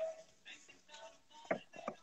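A quiet lull in a live phone video call, with faint background tones and two short clicks in the second half.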